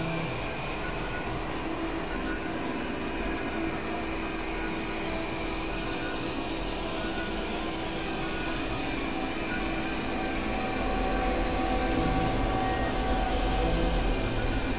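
Experimental electronic drone from synthesizers: a dense, noisy wash with several steady held tones layered through it and a few faint high glides near the middle. It grows louder, with a heavier low rumble, from about eleven seconds in.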